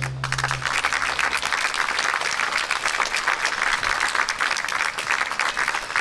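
Audience applauding steadily as the band's last held chord dies away in the first second.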